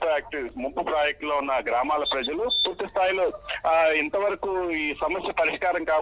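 Speech over a telephone line, thin and cut off in the highs, running without a break; a short high beep sounds twice about two seconds in.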